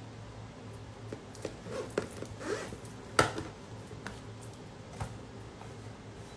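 Rustling and handling noises with scattered clicks, the sharpest about three seconds in, over a faint steady hum.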